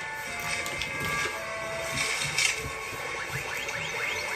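Video arcade ambience: overlapping electronic beeps and held tones from arcade game machines, with a few quick falling chirps near the end, over background music.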